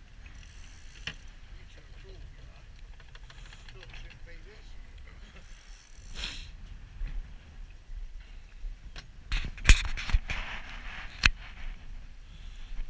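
Sounds aboard a small boat at sea: a steady low rumble with short hissing swells of water against the hull, and a cluster of sharp knocks and clatters near the end, the loudest sounds here.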